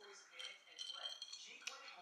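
Quiet sipping and swallowing of a fizzy juice drink from a glass, with a short click about one and a half seconds in.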